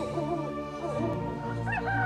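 Soft background music from a live band: sustained keyboard chords, with a few faint short wavering pitched sounds over them.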